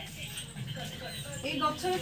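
Speech: a woman's voice over faint steady background noise, with pitched, wavering voice sounds in the second half.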